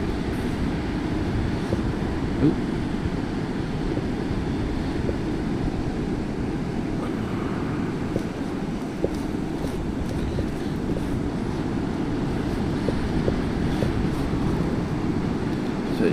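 Steady low rumbling background noise, even in level throughout, with a few faint clicks.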